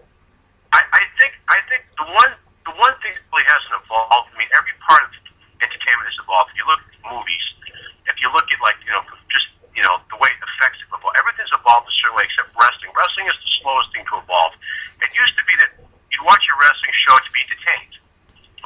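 Speech only: a man talking at length over a telephone line, the voice thin and cut off at the top, with only short pauses.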